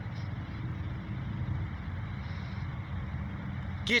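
A steady low motor rumble in the background, like vehicle traffic.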